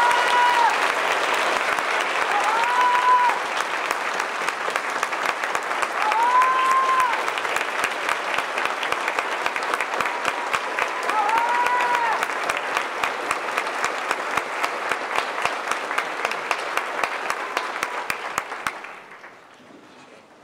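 Concert-hall audience and orchestra players applauding, dense and steady, with four short high calls that rise and fall over the clapping. The applause dies away near the end.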